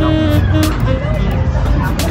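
Fairground din: loud music over a heavy, steady low rumble, with crowd voices mixed in.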